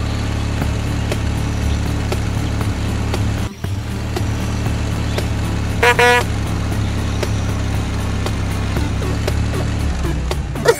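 Cartoon bus engine sound effect running steadily, dropping out briefly about three and a half seconds in, with one short horn toot about six seconds in.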